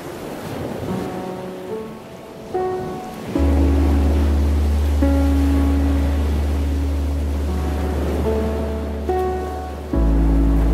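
Ocean waves washing ashore under mellow background music. A deep held bass note comes in about three seconds in and the music gets louder.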